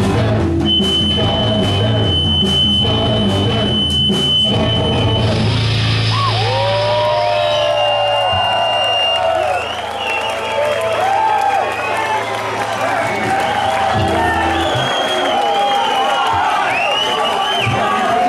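A garage-punk band finishes a song live: drums, electric guitars and organ play to a close about five seconds in, with a high steady tone held over the last bars. The crowd then cheers and whoops over a low held hum that cuts off near the end.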